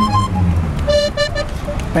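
City traffic on a wide avenue: a bus and cars going by with a low engine hum, and a few short horn toots about a second in.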